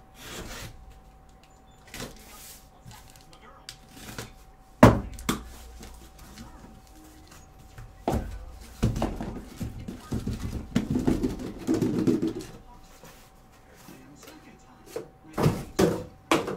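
Cardboard shipping case being handled and opened: scattered knocks and thunks, the loudest a sharp knock about five seconds in, then a few seconds of cardboard rubbing and scraping as the sealed card boxes are slid out. A faint steady tone runs underneath.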